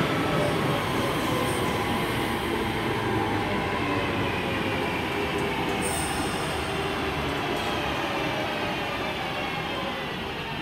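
Class 323 electric multiple unit pulling away along the platform: a steady rumble of wheels on the rails with a faint, thin whine that slides in pitch, fading a little as the train draws away.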